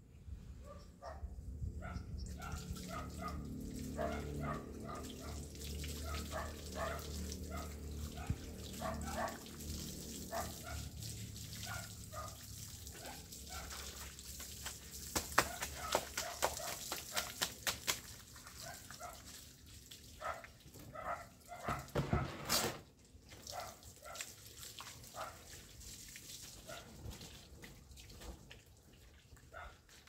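Water running from an outdoor tap for the first dozen seconds or so, with a dog barking many times in the background. There are sharp clicks and clatter around the middle.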